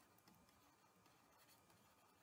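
Near silence, with a few very faint ticks from a stylus writing on a tablet.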